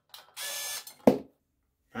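Cordless electric screwdriver running in short bursts, a brief blip and then about half a second of steady motor sound, as it backs out a screw. A single sharp knock about a second in is the loudest sound.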